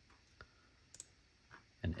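Two faint, sharp clicks of a computer mouse about half a second apart, with a softer one just after; a man's voice begins right at the end.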